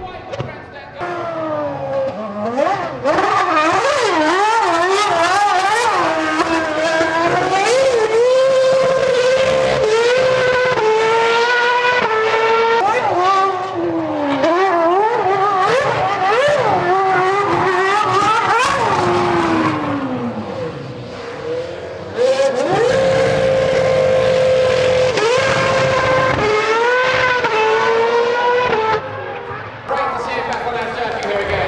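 2.4-litre Mercedes-Benz V8 of a 2008 McLaren MP4-23 Formula One car at very high revs, its note rising and falling again and again with quick gear changes as it is driven through bends. About twenty seconds in it drops away in a long falling note, then climbs back and holds one high steady note for a couple of seconds.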